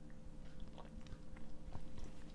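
Faint mouth sounds of a person sipping and swallowing a shot of spirit: a few small lip and tongue clicks over a low steady hum.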